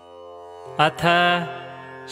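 Sanskrit stotra chanting: a steady drone swells in, and about two-thirds of a second in a male voice begins intoning the opening word 'atha' over it.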